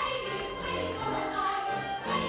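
Choir and soloists singing a musical-theatre number with instrumental accompaniment.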